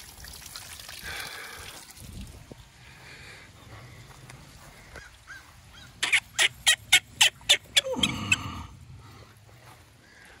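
Outdoor hose spigot being turned off by hand: a quick run of short squeaks, about five a second, then a longer squeal that drops in pitch.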